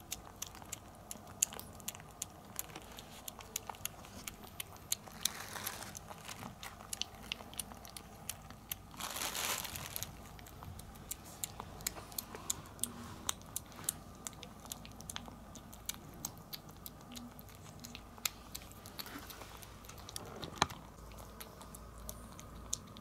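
A kitten eating soft wet cat food from a foam tray: irregular small wet clicks of chewing and lapping. A short rustle comes about nine seconds in.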